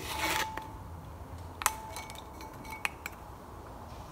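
Terracotta plant pot being handled on a wooden slatted shelf: a short scrape at the start, then a sharp knock about a second and a half in that rings briefly, and a lighter knock near the end.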